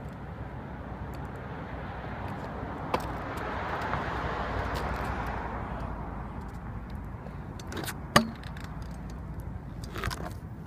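A car passing unseen along the road: a steady rushing sound that swells and then fades over a few seconds. A sharp click comes near the end.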